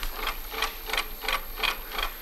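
Motor-driven wave maker on a tabletop wave tank, its mechanism knocking in a steady rhythm of about three knocks a second as it drives waves through the water.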